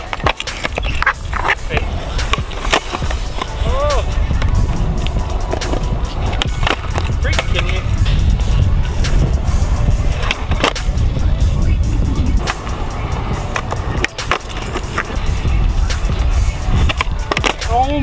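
Skateboard wheels rolling over rough concrete with a steady rumble, broken by sharp clacks of the tail popping and the board landing during flip tricks.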